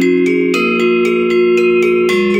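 Balinese gendér wayang, bronze keys over bamboo resonators, played with two mallets. A quick run of struck notes, about four a second, each note ringing on and overlapping the next, with a low note sustained underneath.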